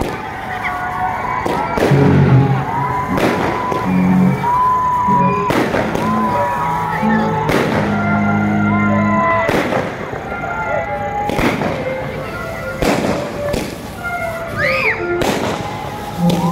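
Aerial fireworks shells bursting overhead, a string of loud bangs about one every two seconds.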